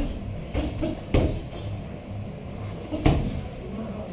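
Dull thuds of boxing sparring: gloved punches landing and feet moving on a hard floor, four sharp hits, the loudest about three seconds in.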